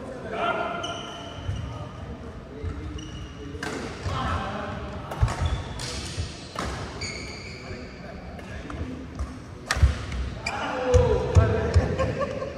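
Badminton rackets striking a shuttlecock during a rally, several sharp smacks a second or more apart, with court shoes squeaking on the mat between shots.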